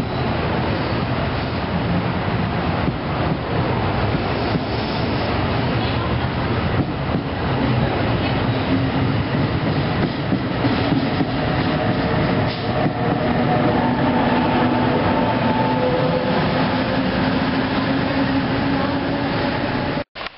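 NJ Transit multilevel commuter train moving along the platform and pulling away, its wheels rumbling and clattering on the rails. About halfway through, a steady whine joins the rumble and keeps on to the end.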